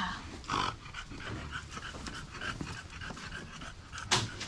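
A small dog panting in quick, even breaths, about three a second, with a short louder sound about half a second in.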